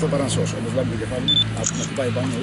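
People talking over a steady low hum, with a short high beep about halfway through.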